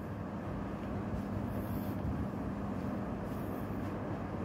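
A steady low rumble with a faint constant hum, and two brief faint hisses about one and a half and three and a half seconds in.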